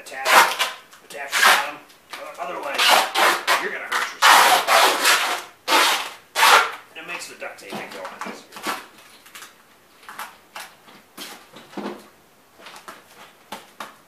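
Duct tape being pulled off the roll in a run of loud, rasping rips, many in quick succession through the first half, then shorter, quieter rips and rustles as it is wrapped around a boot.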